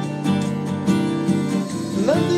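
Acoustic guitar with a capo on the fifth fret, strummed on a G minor chord (a D-minor shape) in a down, down-up-down-up pattern, with the chord ringing between strokes. Near the end it changes chord.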